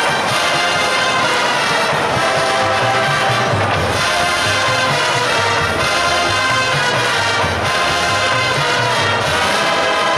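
College marching band playing a jazz arrangement at full volume: brass with trombones and trumpets over a steady drum beat.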